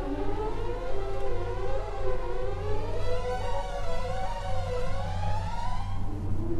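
Orchestral music from an old mono recording: several sustained notes held together and climbing slowly in pitch through the passage, over a steady low hum.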